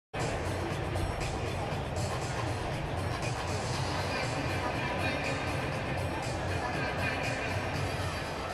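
Music played over a stadium's public address system, with a steady low bass beat, over a light murmur of crowd chatter.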